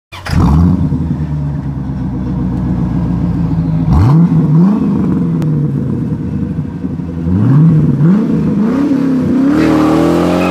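A C4 Corvette's V8 starts and settles into a steady fast idle. Several short throttle blips follow, two about four seconds in and a run of them later. Near the end the revs climb steadily as the car launches, spinning its rear tyres.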